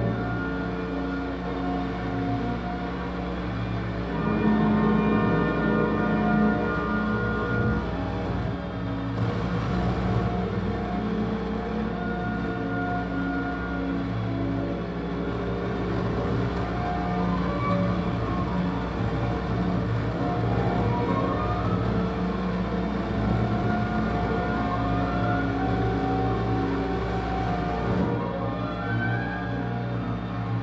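Live electronic drone music played from a mixer and electronics through a PA speaker: layered sustained low drones under held higher tones, with slow gliding pitches in the second half.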